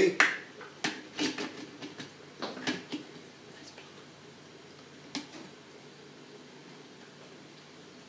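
A handheld can opener being worked on a tin can: a quick run of short clicks and taps over about two seconds, then one more click a couple of seconds later.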